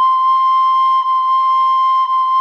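Recorder playing a single high C, a near-pure tone around 1 kHz, sustained and re-tongued on the same pitch about once a second.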